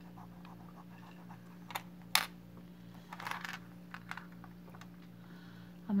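Light clicks and scraping as the metal end of a beaded bracelet is rubbed on a black testing stone to test for silver, with two sharper clicks about two seconds in and a short scratchy rub a second later, over a steady low hum.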